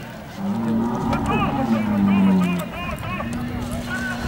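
A bull bellowing in long, low, drawn-out calls: one from about half a second in to past two and a half seconds, then another near the end. Men's voices are heard over it.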